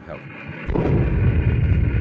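Radio-drama sound effect of an artillery shell bursting: a low, heavy rumble that surges about two-thirds of a second in and keeps rolling. It is the sign of shelling that keeps landing about once a minute.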